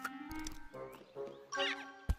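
Orchestral film score, with a cartoon squirrel's high squeaky chattering call rising over it about three-quarters of the way in.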